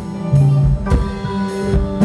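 Live rock band playing an instrumental passage: electric guitars, keyboard, bass and drum kit, with drum and cymbal hits on a steady beat under sustained notes.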